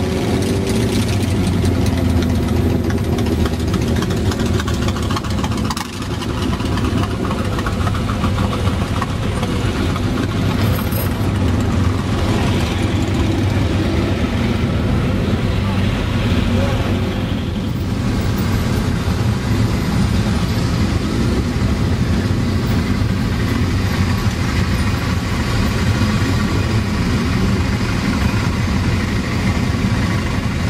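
Engines of a large pack of motorcycles running at low speed and idling in slow, bunched-up traffic: a loud, steady low drone.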